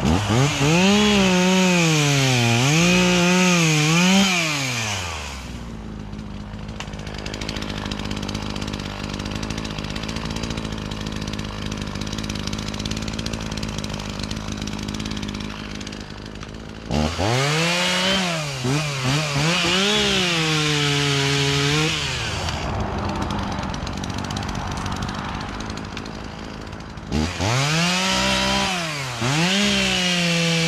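Echo CS450P two-stroke chainsaw running at high revs in three bursts, at the start, about halfway through and near the end, its pitch sagging and recovering as it cuts into wood. It drops back to a steady idle between the bursts.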